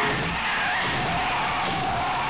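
Vehicle tyres skidding on the road: a sustained, slightly wavering squeal over a rushing noise.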